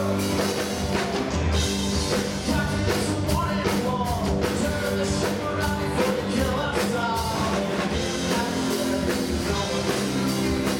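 Live rock band playing: electric guitars, bass guitar, drum kit and keyboard, with a bending melodic line on top.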